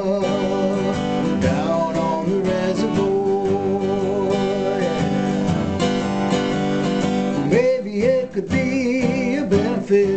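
Acoustic guitar strummed steadily in a country-style song, with a man's singing voice over it in places, including a held, wavering note near the end.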